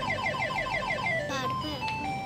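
Electronic beeps of a coin-operated fruit slot machine as its light runs around the ring of fruit symbols during a spin. A rapid run of beeps slows about a second and a half in into separate tones, each a little lower than the last, as the light comes to rest.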